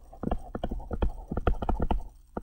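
Stylus tip tapping and sliding on a tablet screen while handwriting a word: a quick, irregular run of small clicks.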